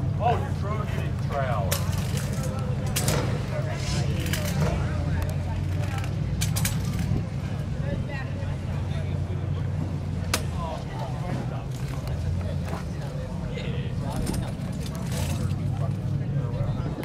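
A car engine idling steadily, with indistinct voices of people around it and a few light clicks.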